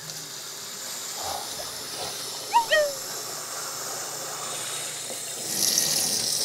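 Bathroom tap running steadily into a sink, with louder splashing near the end as water is scooped onto the face. Two short squeaky chirps come about two and a half seconds in.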